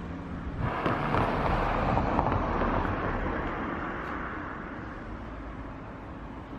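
A car passing along the street: its road noise swells about half a second in, is loudest around two seconds in, then fades slowly away.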